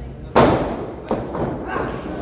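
A wrestling ring takes a loud, sudden impact about a third of a second in, with a short ringing tail. Three lighter thuds follow over the next second and a half as the wrestlers work each other.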